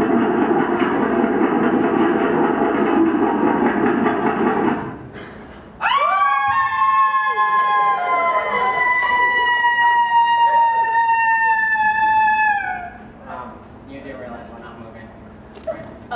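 A few seconds of loud, dense noise, then a single long scream that leaps up at the start and holds for about seven seconds, sliding slowly down in pitch before it trails off: an actor screaming on a mimed roller-coaster drop.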